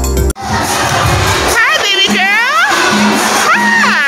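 A short burst of music cuts off abruptly, then a crowd of young children shout and squeal, with music still playing underneath.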